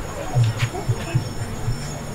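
Outdoor footpath ambience: low voices of passers-by and scattered footsteps, with steady high-pitched tones running throughout.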